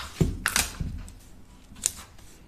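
Hands handling paper pattern pieces and tools on a cutting table: a few soft knocks and a brief paper rustle, then a sharp click near the end.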